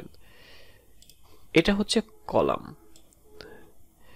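Two short mumbled fragments of a man's voice about halfway through, with a few faint computer mouse clicks around them in an otherwise quiet stretch.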